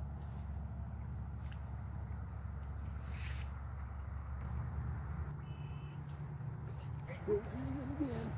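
Steady low drone of distant freeway traffic, with a short high bird call a little past the middle and a brief voice near the end.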